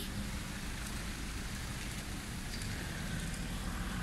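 Steady outdoor background noise: a low rumble under an even hiss, with no distinct events.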